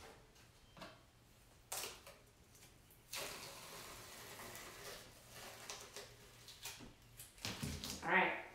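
Painter's tape being peeled off a painted canvas: a single tap just under two seconds in, then a faint, drawn-out rasp of the tape pulling away for about two seconds, followed by small handling sounds.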